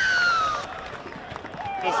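A broadcast replay-transition sound effect: one electronic tone gliding downward for about half a second, then fading. It gives way to a low background of crowd and field noise.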